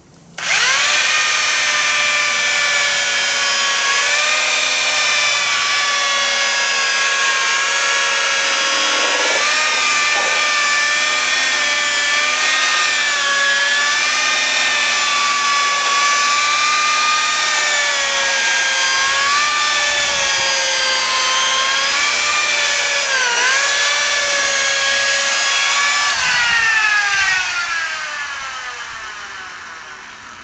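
Electric polisher buffing the aluminum skin of an Airstream trailer. The motor starts suddenly about half a second in and runs with a steady whine whose pitch wavers and dips as the pad is pressed against the metal. Near the end it is switched off and winds down with a falling pitch.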